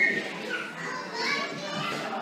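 Children's voices and chatter from a group of spectators, high-pitched and overlapping, with no clear words.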